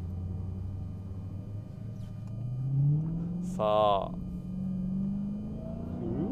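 Dodge Challenger SRT Hellcat Redeye's supercharged V8 pulling away under gentle throttle, its note rising slowly and steadily in pitch. A brief, loud, wavering cry like a voice cuts in a little past halfway.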